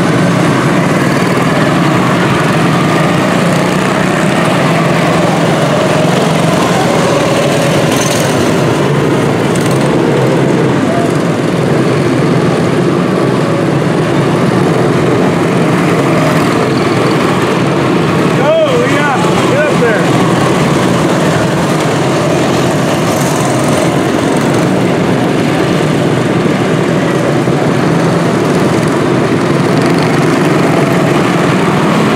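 A pack of quarter midget race cars' small single-cylinder Honda 160 engines running together as the cars lap a short oval, a steady, loud buzz that swells and fades as cars pass.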